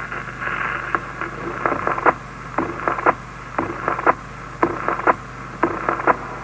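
Old disc record playing on after its spoken part has ended: band-limited surface hiss with sharp clicks repeating about twice a second, over a steady low hum.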